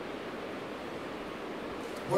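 Steady, even hiss of room noise, with no distinct events.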